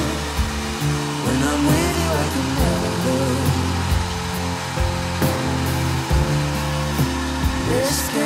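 Handheld hair dryer blowing steadily while drying long wet hair, run on its moisture setting, under background pop music.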